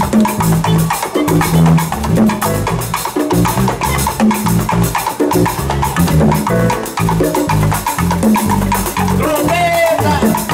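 A live Afro-Cuban band plays a percussion-driven groove, with bongos struck by hand over a drum kit and repeating low notes in a steady rhythm.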